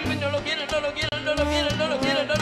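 Live salsa orchestra playing: a bass line stepping from note to note under sharp percussion strokes, with a sung melodic line carried over the top.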